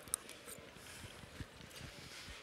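Quiet room tone with a few soft clicks, one sharper click shortly after the start.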